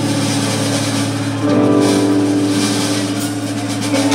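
Live rock band holding sustained, droning amplified chords under a wash of higher noise; the held notes change to a new chord about a second and a half in.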